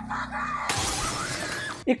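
Glass shattering: a dense crash that starts a little under a second in, lasts about a second and cuts off abruptly, over a woman's scream.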